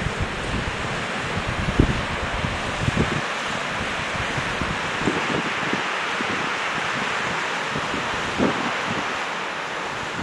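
River water rushing over shallow rocky rapids in a steady hiss, with wind buffeting the microphone in low gusts, sharpest about two seconds, three seconds and eight and a half seconds in.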